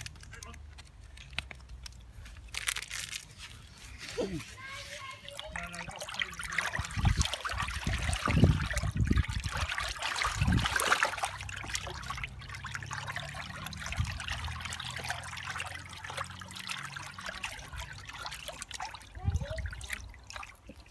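Hands swishing and sloshing water in a plastic tub, mixing in just-added gelling powder while it is still liquid. The splashing builds and is loudest through the middle, with a few dull thumps.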